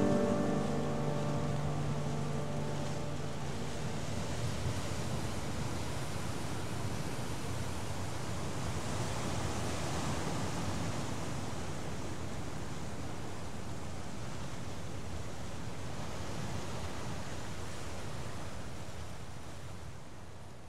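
Sea surf washing ashore: a steady rush of breaking waves, with the last notes of the music dying away in the first few seconds. The sound fades out near the end.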